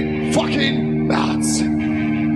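Heavy metal band playing live: a held electric guitar chord rings steadily under the singer's voice.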